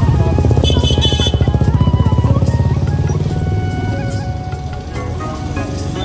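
A motorbike engine running close by with a rapid low pulse, loudest in the first two or three seconds and then fading away, over music.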